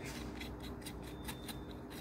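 Small metal parts and tools clicking and scraping as they are handled on a rubber workbench mat, in a quick irregular string of light clicks.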